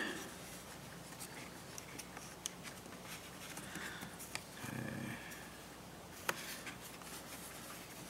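Faint small clicks and taps, scattered through the quiet, of hands handling small-engine parts and fuel lines, with a short low hum of a person's voice about halfway through.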